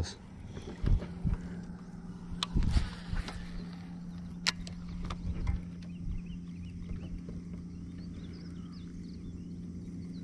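Electric trolling motor humming steadily, with a few clicks and knocks of rod and reel handling in the first few seconds.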